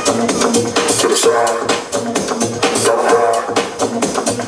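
Electronic dance music played loud over a club sound system, with a steady driving beat and repeating synth lines.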